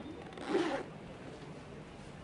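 A brief rustle of paper sliding against a folder, about half a second in, as a ticket is drawn from a boarding-card wallet; the rest is quiet room tone.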